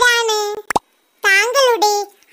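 Speech: a child's high-pitched voice saying two short phrases with a pause between them, and a single short click just before the pause.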